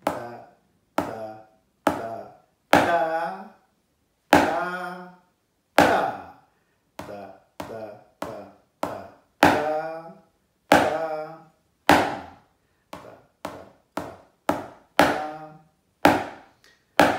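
Drumsticks on a practice pad playing slow Basel-drumming five-stroke rolls (Fünferli), left and right, each closed by single accented strokes (Abschläge). Sharp strokes come about every half second to second and a half, with the longer rolls standing out among the short single hits.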